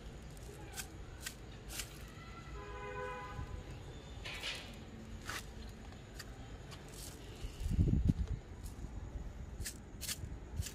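Scattered light clicks and rustles from a plastic bottle being handled and tilted over a pot of cactus soil. A short pitched tone comes about three seconds in, and a brief low thump of handling noise near the end is the loudest sound.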